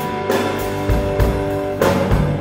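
Live fusion rock band playing: electric guitar holding sustained notes over bass and drum kit hits.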